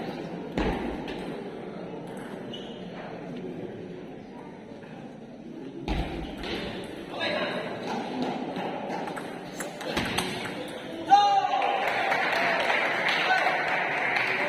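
Murmur of voices in a large sports hall, with a few sharp knocks. About eleven seconds in comes the loudest sound, a short ringing ping, after which the chatter grows louder.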